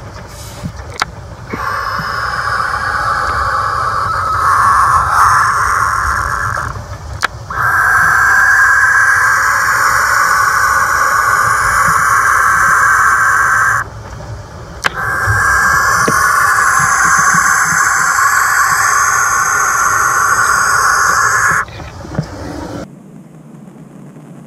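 Barn owl in her nest box giving three long hissing calls, each lasting about five to seven seconds, with a few sharp clicks between them. This is her defensive reaction to a strange object, a camera, in her box while she sits on eggs. Storm wind rumbles low beneath until near the end.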